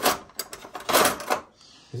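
Metal cutlery clattering in a kitchen drawer as a hand rummages through it and pulls out a stainless-steel bottle opener: a sharp clink at the start, a couple of clicks, then a longer rattle about a second in.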